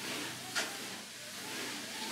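Manual, non-motorised treadmill driven by slow walking steps: a steady rolling hiss from the belt, with a single sharp knock about half a second in.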